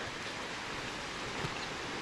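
Steady, even rushing of a mountain stream.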